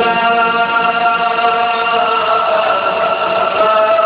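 A Quran reciter's voice holding one long melodic note in chanted Quranic recitation (tajwid), shifting slightly near the end.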